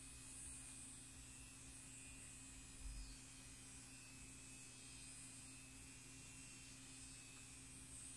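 Faint, steady buzz of a silicone electric facial cleansing brush running as it is moved over soaped skin, with a soft bump about three seconds in.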